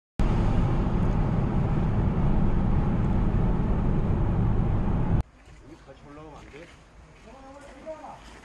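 Steady low road and engine rumble inside a moving car's cabin. It cuts off suddenly about five seconds in, and quieter outdoor sound with people's voices follows.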